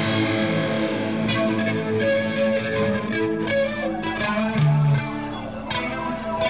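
Instrumental passage of a Britpop rock song with no singing: electric guitar plays a line of notes over bass. The dense full-band sound thins out about a second in.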